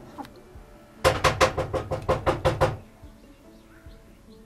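Rapid, insistent knocking: a quick run of about a dozen sharp knocks, some seven a second, with a steady ringing tone underneath.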